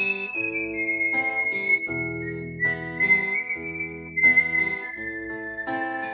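Fingerpicked acoustic guitar under a whistled melody, the whistle held high and stepping slowly down in pitch note by note.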